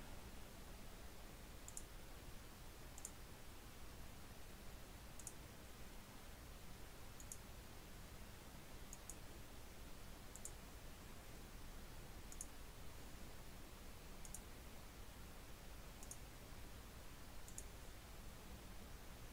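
Computer mouse clicking faintly, about ten clicks spaced one to two seconds apart, some heard as a quick double tick, over a faint steady hiss.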